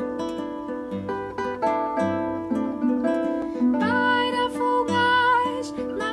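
Two classical nylon-string guitars playing an instrumental introduction of plucked, arpeggiated notes. About four seconds in, a singing voice joins with a few long held notes over the guitars.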